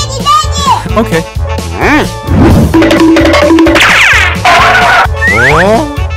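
Upbeat children's background music with a steady bass beat, laced with cartoon sound effects that slide up and down in pitch, and a run of quick rising swoops near the end.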